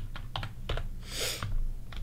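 Computer keyboard typing: a handful of scattered keystroke clicks a few tenths of a second apart, with a short hiss about a second in.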